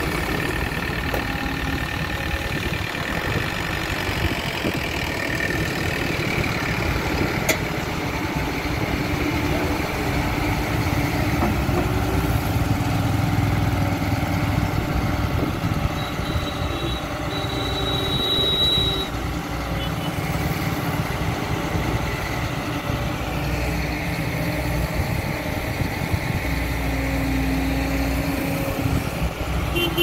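Eicher Pro 8035 XM tipper truck's diesel engine running steadily while its hydraulic hoist tips the loaded dump body to unload.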